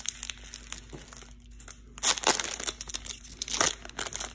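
Foil wrapper of a Pokémon TCG Celebrations booster pack being torn open and crinkled by hand, faint at first and crackling louder from about halfway through.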